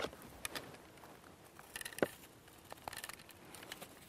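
Faint pattering and a few scattered light ticks as small quick-dissolve fishing pellets are poured into a PVA bag.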